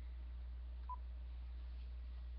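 A single short electronic phone beep about one second in, over a steady low electrical hum.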